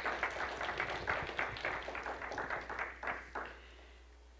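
Congregation applauding, many hands clapping at once, the clapping thinning out and dying away about three and a half seconds in.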